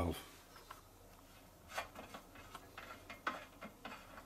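A few faint clicks and light metal rubbing as the safety valve is unscrewed from the top of a Stuart 500 model steam boiler.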